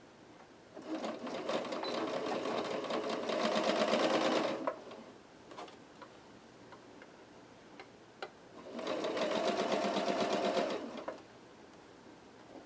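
Singer Quantum Stylus electric sewing machine stitching through fabric in two runs, the first about four seconds long and the second about two, with a brief pause and a faint click between them.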